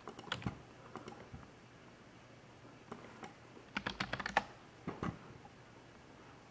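Faint light clicks and taps: a few in the first second and a half, then a quick run of about a dozen clicks a little past the middle and a couple more near the end.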